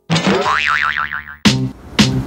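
A comic 'boing' sound effect whose pitch wobbles rapidly up and down for about a second and a half, then music with a beat cuts in.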